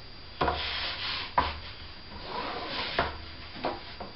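A large fabric-covered cardboard tube being handled and turned on a tabletop: rubbing and rustling of the cloth and cardboard, with several light knocks.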